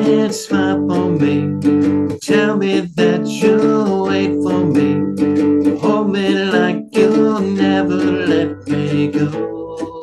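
Two-string 'chugger' license-plate cigar box guitar strummed in a steady rhythm, playing the song's chords in an instrumental stretch between verses.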